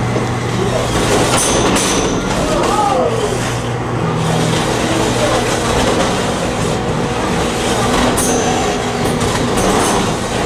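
Beetleweight combat robots fighting: a steady motor drone from the robots runs under the whole stretch, with several sharp metal impacts as one robot is struck and pieces are knocked off it.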